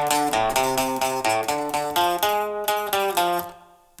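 Gretsch hollow-body electric guitar playing a clean single-note surf riff in quick picked notes: the A-position riff moved one set of strings up to fit a D chord. The last note rings on and fades away near the end.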